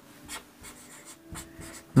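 Marker pen writing on a whiteboard: a series of short scratching strokes as figures are written out.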